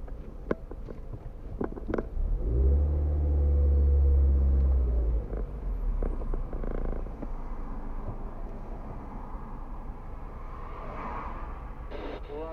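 Car driving in city traffic, heard from inside the cabin: a steady low rumble of engine and road noise. A deeper engine drone swells for about three seconds, starting a couple of seconds in. A few light clicks come before it.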